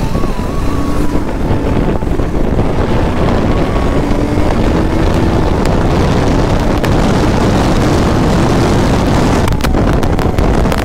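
KTM RC 200 single-cylinder motorcycle ridden at speed: heavy wind rushing over the helmet-mounted microphone, with the engine's drone faintly underneath.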